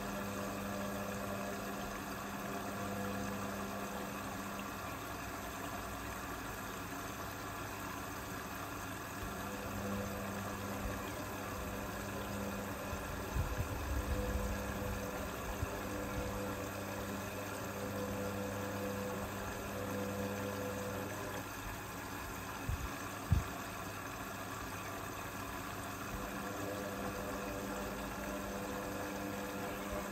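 Indesit IWB front-loading washing machine in its first rinse: the drum motor hums steadily, stopping and restarting several times as the drum reverses, while the wet laundry tumbles. A few low thumps come around the middle, and a single sharp knock about two-thirds of the way through.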